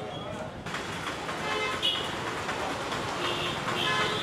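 Busy market-street ambience: chatter of passers-by, motorcycles riding past and short horn toots.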